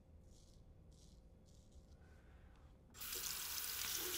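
Faint scraping strokes of a straight razor on lathered stubble, then about three seconds in a sink faucet is turned on and water runs steadily into the basin.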